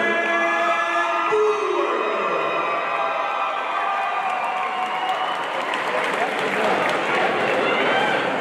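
A ring announcer's long, drawn-out call over the PA, held on one pitch and falling off after about two seconds, followed by a crowd cheering and applauding in a hall.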